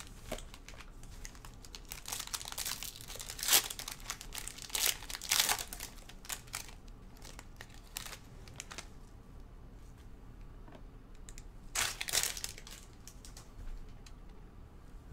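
Foil trading-card pack wrappers crinkling and tearing as gloved hands open them and pull the cards out. The crackling comes in irregular bursts, busiest a few seconds in and again near the end.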